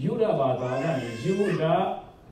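A man speaking in one continuous phrase, his pitch rising and falling.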